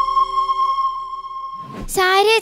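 A recorder ensemble holds the final chord of a piece. The lower note drops out under a second in, and the high sustained note fades away near the end.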